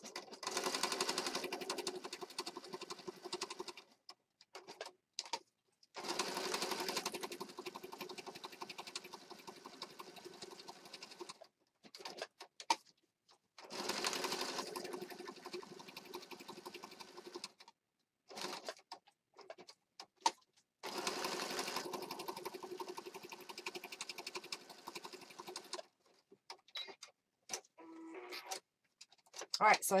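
Electric sewing machine stitching through layered paper and card, running in four stretches of about four to five seconds with short stops and brief starts between.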